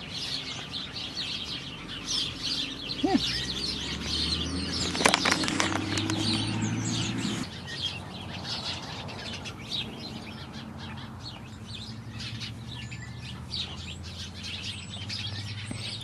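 Small birds chirping busily and continuously, with a low steady hum that starts about three seconds in and stops abruptly about halfway through.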